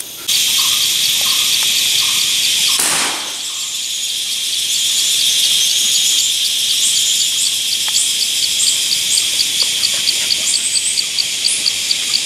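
Forest insects chirring in a steady high chorus, with a fast, even pulsing chirp that runs throughout and bird chirps above it. A brief rush of noise comes about three seconds in.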